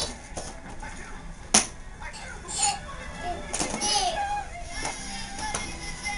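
A tower of large cardboard toy blocks knocked over by a toddler: one sharp knock about a second and a half in as blocks hit the floor, with a few lighter knocks. The toddler squeals and babbles briefly afterwards.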